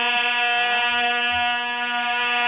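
Men's voices holding one long, steady sung note over a microphone, the sustained drone that backing singers hold under a majlis recitation.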